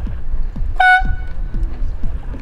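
A short, high-pitched horn blast about a second in, the kind of sound signal that accompanies a flag signal in a dinghy race, over background music with a steady repeating beat.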